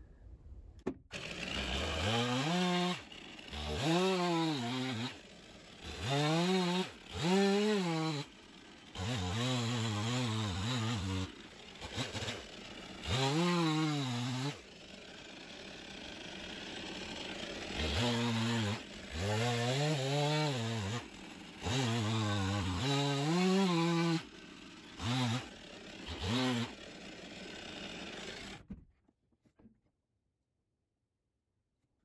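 Gasoline chainsaw cutting through a waterlogged dock log. It is throttled up in about a dozen bursts, each rising and falling in pitch, with dips back toward idle between them. The sound cuts off suddenly near the end.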